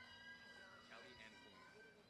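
Near silence, with faint high-pitched voices far in the background.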